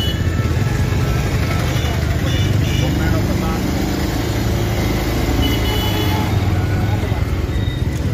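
Busy street traffic heard from a motorcycle at a standstill in a dense crowd: engines running, a crowd's voices all around, and a few brief horn toots.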